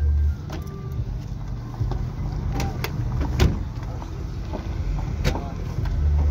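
Trunk lid of a Lada 2107 being shut: a few light knocks, then one loud thump about three and a half seconds in, over low handling rumble and faint background voices.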